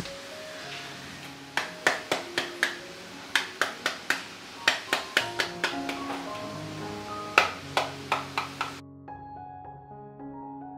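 Halved pomegranate struck over a glass bowl to knock its seeds out: sharp taps in quick runs of several, with seeds falling into the bowl. The taps stop near the end, and soft piano music plays throughout.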